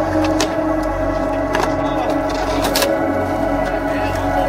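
Ambient electronic music with held, sustained chords, and a few sharp clicks over it.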